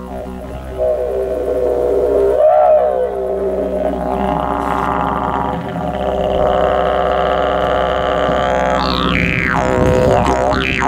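A long, curved wooden didgeridoo with its bark still on, played as a continuous drone. The player's mouth shaping makes its overtones sweep up and down a little over two seconds in, and near the end he voices sweeping, rising and falling calls through it.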